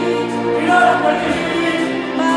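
Live concert music: sustained singing of a romantic ballad over band accompaniment, in a large reverberant arena, as heard from the audience.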